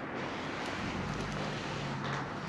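Steady outdoor background noise with a faint low hum in the second half.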